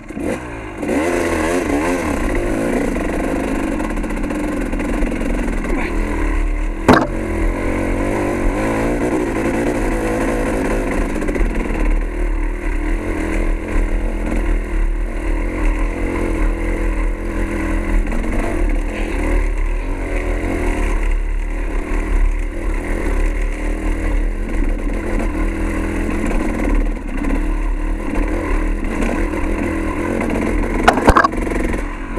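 Dirt bike engine pulling away from almost a standstill about a second in, then running on with the revs rising and falling as it is ridden over rough trail. There is a sharp knock about seven seconds in.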